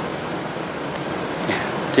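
Steady, even hiss of background noise, with a man's voice briefly at the very start and end.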